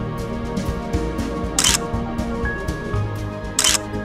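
Background music, with two camera shutter clicks about two seconds apart.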